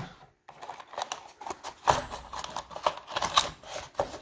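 Small cardboard CPU retail box being opened by hand, its flaps scraping and rustling, with irregular light clicks and knocks as the stock Intel heatsink-fan is lifted out. The loudest knock comes about two seconds in.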